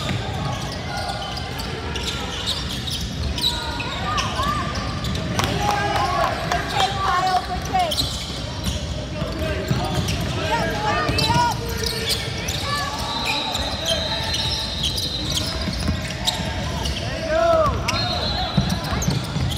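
Basketball game in a large gym: basketballs bouncing on a hardwood floor, sneakers squeaking, and the indistinct calls of players and spectators, all echoing in the hall.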